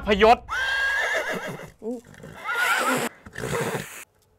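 Horse whinny sound effect: one long wavering neigh, then a shorter one about two and a half seconds in.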